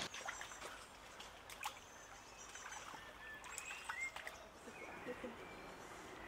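Quiet woodland ambience: the faint steady rush of a shallow stream with a few short bird chirps in the middle, and a couple of soft clicks.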